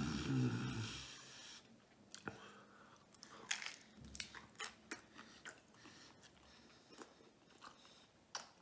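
A man biting into a crunchy deep-fried Jack in the Box taco and chewing it, with a series of sharp crunches that cluster about three and a half to five and a half seconds in. A short hum from his voice comes at the start and is the loudest sound.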